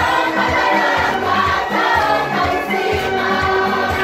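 A choir of schoolchildren singing a church hymn together, over a steady beat.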